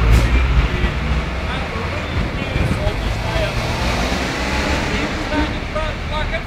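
Street traffic noise: a low rumble that is loudest at the start and swells again midway, with scattered voices.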